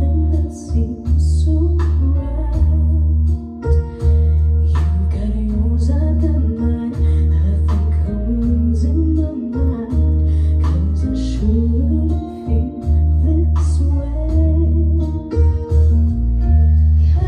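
A woman singing a love song with a live band: a deep bass line, guitar, keyboard and drums.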